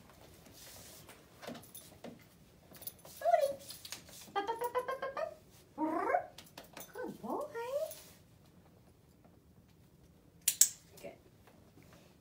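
A young puppy whining in several short rising and falling whines, then a single sharp click from a dog-training clicker near the end.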